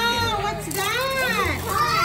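Excited children's voices: several overlapping, drawn-out wordless cries that rise and fall in pitch, two long ones in a row.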